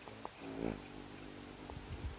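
Hummingbird wings humming as a bird flies close to the feeder, swelling to its loudest about half a second in and humming again near the end. A few short sharp clicks come before it.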